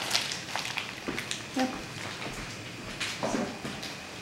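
Pan of water heating on a gas burner, just starting to bubble: a steady low hiss with scattered small ticks and clicks.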